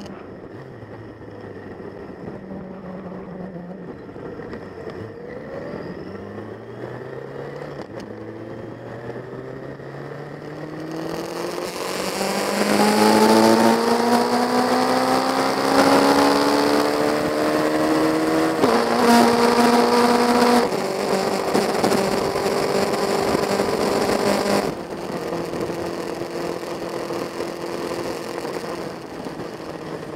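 Motorcycle engine under the rider, pulling up through the gears with its pitch rising in repeated sweeps. It gets loud with wind rush about halfway through, drops in pitch at a shift, holds a steady note, then eases off near the end.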